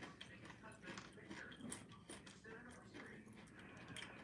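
Near silence: faint clicks and handling sounds of people eating, with faint indistinct voices.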